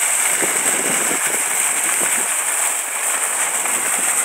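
Fountain jets pouring and splashing steadily into a stone basin's pool.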